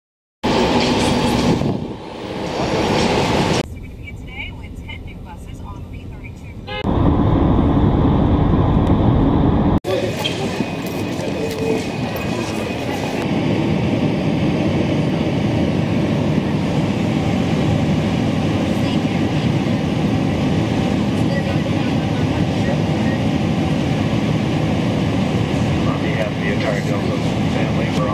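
A few short, abruptly cut snippets with voices in them, then from about ten seconds in the steady rush of a jet airliner in flight, heard from inside the cabin.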